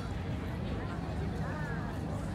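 Indistinct chatter from people around, no words clear, over a steady low hum of outdoor background noise.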